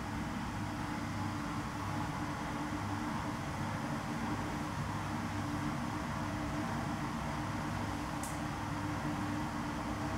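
Steady low hum and hiss of an underground room's background noise, with one faint click about eight seconds in.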